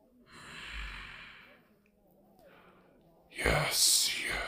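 A man's voice sighing: a long breath out, then a louder, harsher breath starting about three and a half seconds in.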